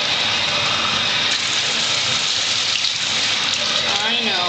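Steady rush of running water.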